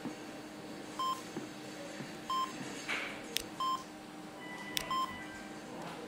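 Hospital bedside patient monitor beeping steadily, one short high beep about every 1.2 seconds, over a faint steady hum.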